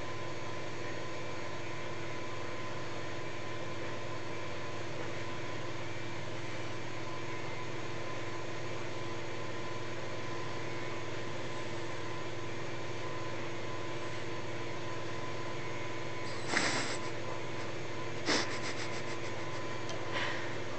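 Steady mechanical room hum with several fixed tones. Two short, sharp noisy sounds come near the end, the second with a brief rattle.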